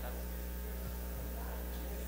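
Steady electrical mains hum in the audio feed, a low constant buzz that does not change.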